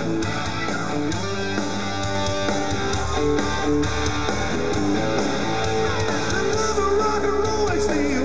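Live rock band playing an instrumental passage of the song led by electric guitar, with held notes and a few bent notes near the end.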